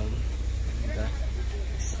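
A city bus engine idling at a stop, a steady low rumble, with faint voices nearby.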